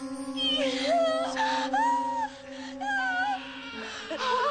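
A newborn baby crying in four or five short, wavering wails, over a soft sustained music bed.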